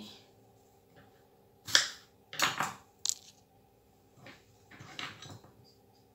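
Knife cutting fruit on a plastic chopping board: several short separate cuts and knocks, with a sharp click about three seconds in.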